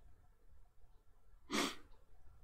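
A man taking a single short, sharp breath, about one and a half seconds in, during a pause in his speech; otherwise faint room tone.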